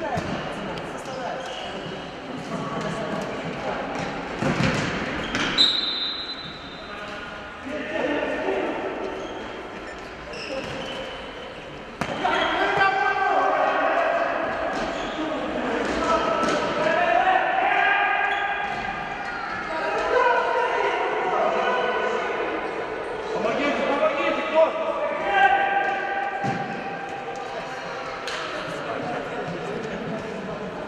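A futsal ball being kicked and bouncing on the hard court, knocks echoing in a large sports hall, with players shouting over it, more voices from about twelve seconds in.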